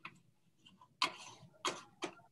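Computer mouse clicks: a faint click at the start, then two sharp clicks, about a second in and just over half a second later.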